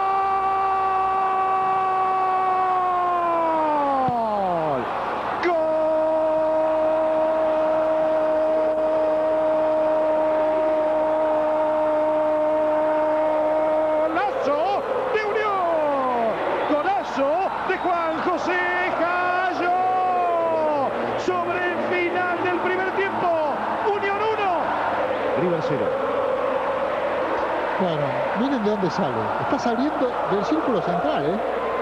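A football commentator's drawn-out goal cry. One held shout of about five seconds falls away in pitch, then a second shout is held for about eight seconds, followed by fast, excited shouting.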